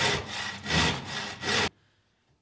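Handsaw cutting across a wooden 2x4, three strokes about three-quarters of a second apart. The sound cuts off abruptly near the end.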